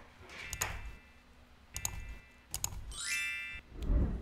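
Sound effects of an animated subscribe button: three sharp mouse clicks, each with a short electronic tone, then a rising chime about three seconds in, over soft low whooshes.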